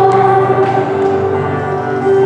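A group of voices singing a hymn together, holding one long note.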